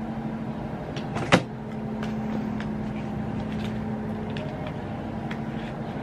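Makeup being handled: one sharp click about a second and a half in and a few lighter taps, over a steady low hum.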